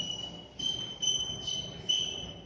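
Chalk squeaking on a blackboard as numbers are written: a high, steady squeal broken into several short strokes.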